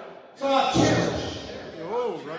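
A man's voice preaching into a handheld microphone, starting suddenly about half a second in, with a drawn-out, rising-and-falling delivery near the end.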